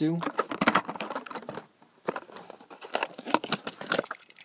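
Hot Wheels blister pack torn open by hand: a quick run of crackling, tearing and clicking from the cardboard card and plastic bubble, with a short pause about halfway.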